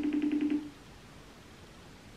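Smartphone video-call ringing tone: one short ring of a steady low tone with a fast flutter, lasting under a second.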